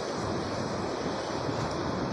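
Steady rush of surf breaking on a sandy beach, with wind on the microphone.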